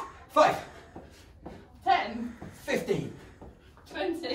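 Speech: a man and a woman counting aloud and laughing as they play catch while hopping on one leg, with light shuffling footfalls on the carpet.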